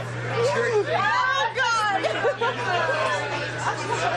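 A crowd of people talking at once, many overlapping voices with no single speaker standing out, over a steady low hum.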